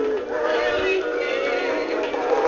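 An animatronic singing fish toy playing its song: a recorded voice singing over music from its small built-in speaker, thin and with no bass.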